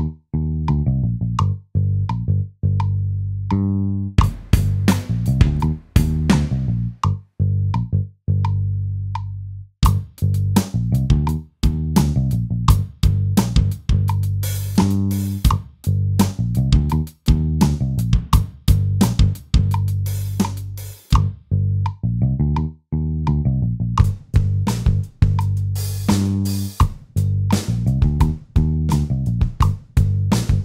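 A looped GarageBand bass line playing on an iPad, with irregular hits on GarageBand's virtual acoustic drum kits tapped over it as different kits are tried out. The sound cuts out suddenly for a moment several times.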